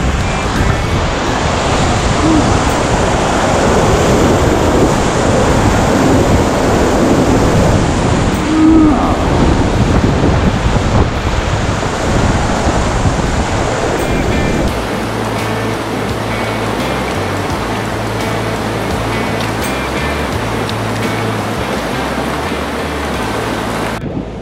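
Whitewater rushing through a river rapid, a steady loud wash of moving water, with background music underneath. The water is loudest in the first half; from about the middle the music's low beat comes through more plainly.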